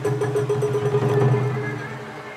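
Taiko drums of a Sawara-bayashi festival ensemble beaten in quickening strokes that run into a fast roll, then die away near the end.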